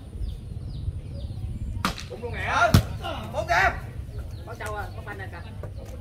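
A volleyball struck by players' hands: two sharp smacks about a second apart, the second the louder, with shouts from players and onlookers around them.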